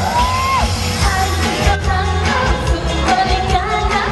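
A woman singing a pop song live into a microphone, backed by a band with drums and bass. Near the start she holds a short note that bends down at its end.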